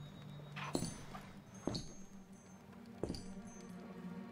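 Slow, heavy footsteps on a wooden floor, three steps about a second apart, each with a small metallic clink, over a faint low music drone.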